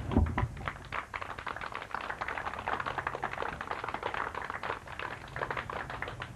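Applause from a small crowd: a dense patter of single hand claps, with a low thump just at the start.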